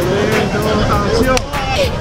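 Busy city street: steady traffic noise with brief indistinct voices.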